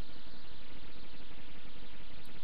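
A steady hiss of background noise with no distinct events in it.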